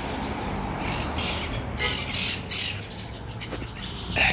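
Wild parrots squawking: a run of short, harsh calls starting about a second in, the loudest about two and a half seconds in, over a steady low background hum.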